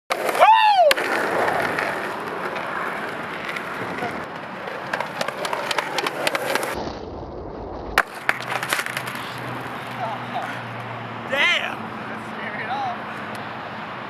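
Skateboard wheels rolling on pavement, with repeated clacks and a sharp knock of the board hitting the ground about eight seconds in. A short falling shout comes right at the start, and a brief vocal sound comes later on.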